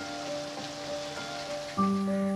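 Soft background music with long held notes over the steady hiss of rain. A new, louder chord comes in near the end.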